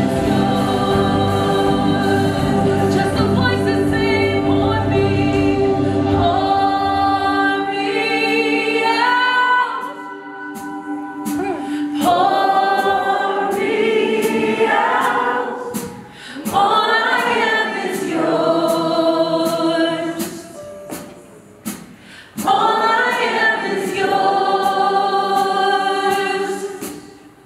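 Live gospel worship music: a female voice sings with acoustic guitar, drums and electric bass. After about six seconds the bass and drums drop out, leaving the singing voices with a regular sharp click keeping time.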